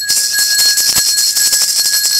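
A hand-held jingling rattle shaken fast and steadily, a bright continuous jingle with a steady bell-like ring held under it.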